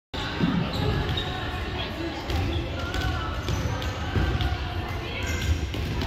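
Volleyballs being struck and bouncing on a hardwood gym floor in irregular knocks, over the chatter of players' voices in the hall.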